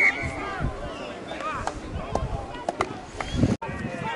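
Voices of rugby players and sideline spectators calling out during play, with a brief high tone right at the start and a few sharp knocks in the second half. The sound drops out for an instant near the end.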